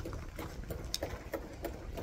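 Faint footsteps on sandy, gravelly ground, light regular steps about three a second, over a low rumble.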